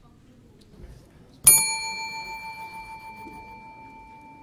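A desk bell struck once about one and a half seconds in, ringing out with a clear tone that fades slowly: a judge's bell signalling the reciter during the recitation.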